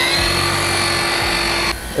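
Small three-inch Flex polisher with a rayon pad running on windshield glass: a steady motor whine that settles at full speed just after the start, then cuts off abruptly near the end.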